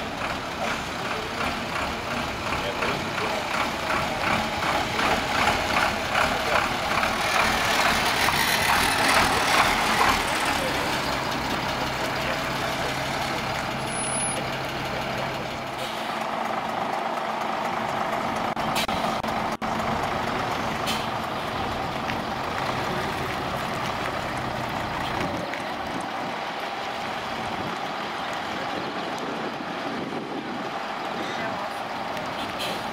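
Engine of a vintage bonneted Volvo truck running as it drives slowly past, getting louder to a peak about ten seconds in, then fading. A steadier low hum follows.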